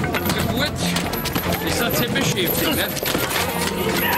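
A brawl: men scuffling and grappling, with many short knocks and thuds of blows and bodies under wordless shouts and grunts.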